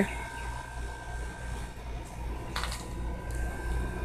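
Quiet outdoor background noise with a steady low rumble, and one short rustle about two and a half seconds in.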